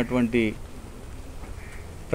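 A news narrator's voice speaking Telugu for about the first half-second, then a pause holding only low steady background hum.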